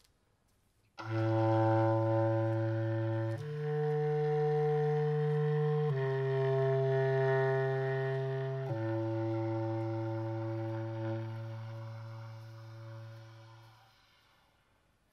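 Solo bass clarinet playing four long, low held notes. The notes begin about a second in: the second note steps up, the next two come back down, and the last note fades away near the end.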